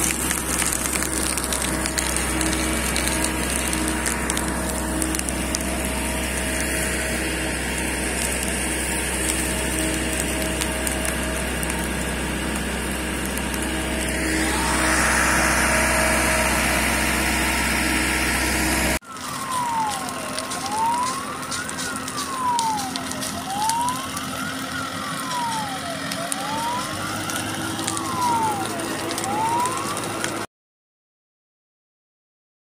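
Fire truck engine and water pump running steadily, with a siren wailing faintly in the background. After an abrupt cut about two-thirds of the way through, a fire engine siren wails loudly, rising and falling about every three seconds.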